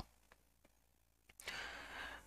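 Near silence, then a soft intake of breath about one and a half seconds in, lasting to the end.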